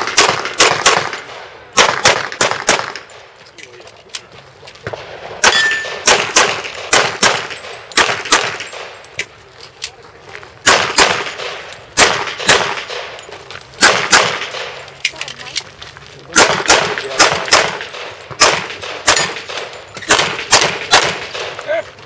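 Semi-automatic pistol fired in quick strings of shots, in several groups separated by short pauses, with steel plate targets clanging when hit.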